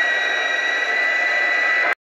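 Amateur radio transceiver receiving the RS-44 satellite's SSB downlink after the contact ends: a steady loud hiss of receiver noise with a fixed high whistle running through it, cutting off suddenly just before the end.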